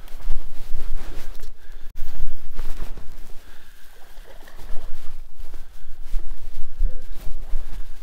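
A hooked bass splashing and thrashing at the water's surface beside a boat, in irregular noisy surges, over a steady low rumble.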